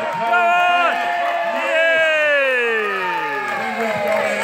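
Spectators shouting and cheering, many voices overlapping, with one long call falling in pitch through the second half.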